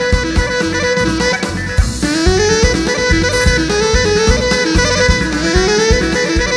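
Live Greek folk dance band playing an instrumental passage: a clarinet plays repeated rising runs over a held note, with a steady drum-kit beat.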